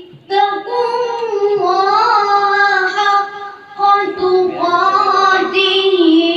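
A boy reciting the Quran in Arabic in the melodic tilawat style, holding long, ornamented notes, with a short pause near the middle.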